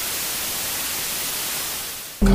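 Television static: a steady, even hiss of white noise that eases off slightly near the end.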